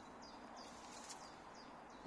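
Faint bird chirping: a run of short, high chirps repeating every few tenths of a second over a quiet garden background.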